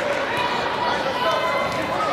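Several indistinct voices calling out and chattering at once in a large gym hall.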